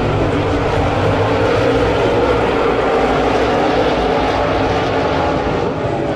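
A field of V8 dirt-track modified race cars running at speed around the oval, many engines blending into one steady, loud, continuous sound.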